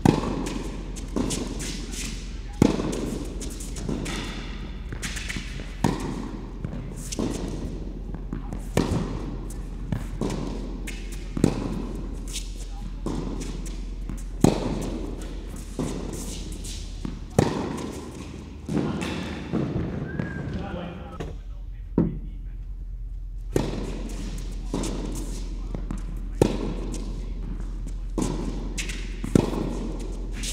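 Tennis rally on an indoor hard court: racquet strings striking the ball and the ball bouncing in between, a sharp knock every second or so, each echoing in the hall. There is a short lull about two-thirds of the way through before the hitting resumes.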